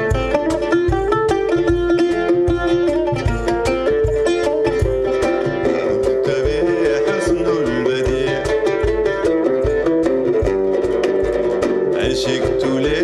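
Live band playing an instrumental passage of a Sudanese song: a busy plucked-string melody over a steady low beat.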